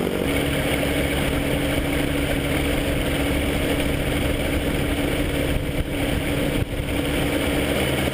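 Ultralight trike's engine idling steadily while the trike taxis, a constant low hum under a noisy rush.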